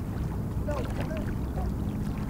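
Outdoor river ambience: a low wind rumble on the microphone with a faint steady hum, and a few short calls that rise and fall in pitch.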